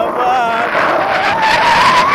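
A person's voice holding a long, wavering note over wind rushing on the microphone during a tandem paraglider flight.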